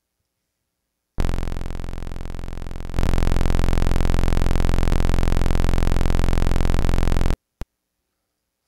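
Native Instruments Massive software synthesizer sounding one held very low note, F-1, a buzzy tone thick with overtones. It comes in about a second in, gets louder near three seconds, holds steady and cuts off suddenly, followed by a single short click.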